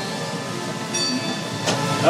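Red Car Trolley streetcar on its rails, pulling into its stop: a steady rumble with brief faint high tones about a second in.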